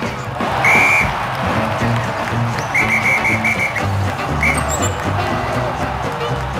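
Background music with a steady bass beat, over which a referee's whistle blows: one blast about a second in, a quick run of four short blasts around three seconds in, and one more shortly after.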